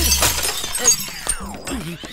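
Glass smashing on a wooden floor: a sharp crack near the start, then shards scattering and clinking, dying away within about a second.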